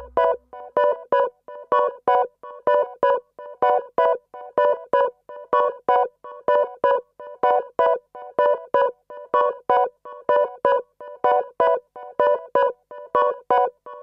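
Breakdown in a minimal techno track: the kick drum and bass cut out at the start, leaving a repeating figure of short, staccato electronic keyboard notes, about two or three a second.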